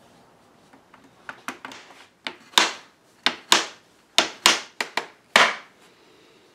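A small hammer tapping at the corner of a wooden mirror frame: about a dozen sharp, irregular knocks that begin about a second in and grow louder partway through.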